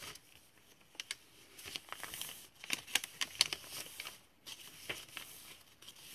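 Paper pages of a handmade junk journal being turned and handled: rustling and crinkling with a run of sharp flicks, busiest in the middle, with a short lull about four seconds in.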